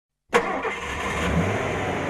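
Car engine starting: silence, then a sudden start about a third of a second in, settling into steady running.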